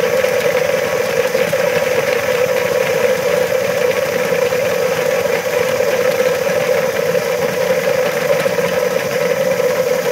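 Homemade electric chestnut peeler running: a motor-driven disc studded with bolts spins the chestnuts around the bucket, knocking and scraping them against the wall to strip their shells. It makes a steady, loud whirring hum under a continuous dense rattle of tumbling nuts.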